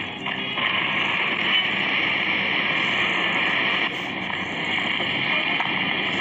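Steady hiss from an old film's soundtrack playing through a television speaker, with a brief dip about four seconds in.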